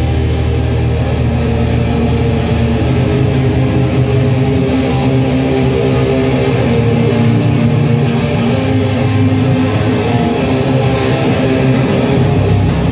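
Live rock band playing loud on amplified electric guitar and bass guitar, with the guitars to the fore.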